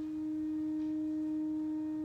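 Pipe organ holding one steady, nearly pure note, flute-like in tone.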